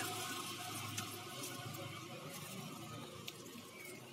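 Faint, steady rushing noise that fades slightly, with a few soft clicks.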